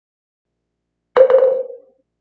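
A bell-like chime is struck about a second in. It rings at one steady pitch with a few quick strikes at the start, then fades away within a second, marking the change to a new chapter.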